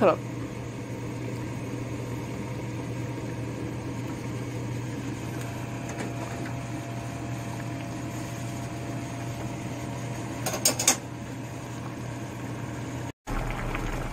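Pot of pork kimchi stew simmering on the stove over a steady low kitchen hum, with a short clatter of metal clicks about ten and a half seconds in. The sound cuts out for a moment near the end.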